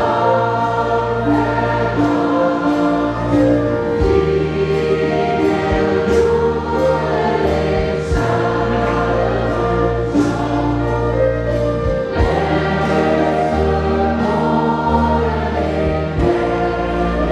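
Music with several voices singing together in a choir-like way over sustained chords and a bass line.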